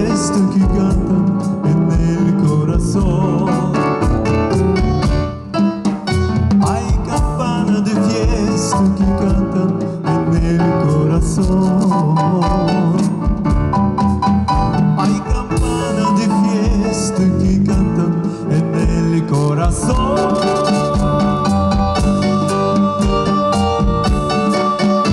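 Live band playing a Latin ballad with keyboard, bass guitar and drum kit keeping a steady beat.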